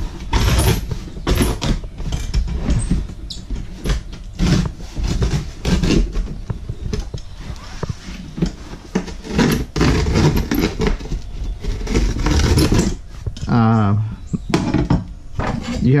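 A box resizer tool's blade scoring down the walls of a cardboard box: repeated scraping of cardboard with irregular knocks as the tool is worked along the box.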